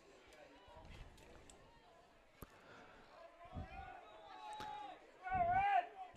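Faint, distant, indistinct voices in open-air ambience, with one sharp click in the middle; near the end a man's voice comes in louder and closer.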